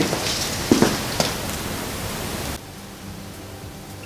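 Steady hiss of recording background noise with a couple of faint clicks about a second in; the hiss cuts off abruptly about two and a half seconds in, leaving a much quieter faint low hum.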